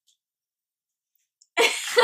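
Silence for about a second and a half, then a person coughing near the end.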